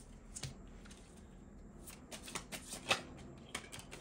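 Tarot cards being shuffled by hand: a scattering of light, irregular card clicks and flicks, the sharpest about three quarters of the way through.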